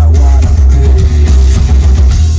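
Loud rock music with electric guitar and drums over very heavy bass, played by a band through the stage sound system.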